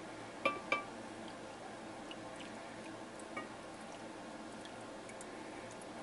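Two light clinks with a short ring, a glass jar knocking against the freeze dryer's metal tray about half a second in, followed by a few faint ticks and drips as raw milk starts to pour into the tray.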